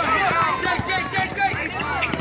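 Players running on an outdoor asphalt basketball court, their footsteps mixed with short sneaker squeaks and the talk of spectators and players around the court.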